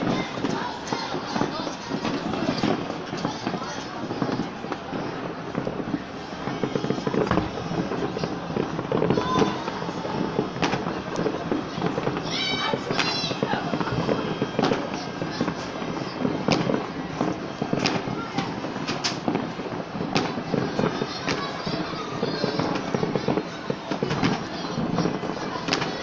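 Fireworks going off with sharp bangs every second or two, against a constant din of many people's voices. A brief run of high chirping tones sounds about halfway through.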